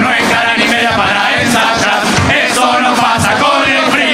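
Murga chorus singing together on stage, several voices at once, with a few sharp hits.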